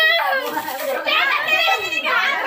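Children's high-pitched voices calling out and chattering over one another, with a long held call trailing off just after the start.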